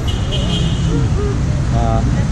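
Steady low rumble of street traffic, with a brief high-pitched tone in the first second and a voice starting near the end.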